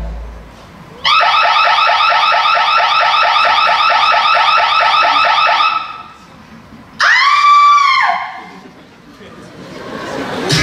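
Electronic alarm sound effect played over a theatre sound system: a fast, repeating, rising warble that starts about a second in and stops about five seconds later. About a second after that comes a single held tone that rises and then falls.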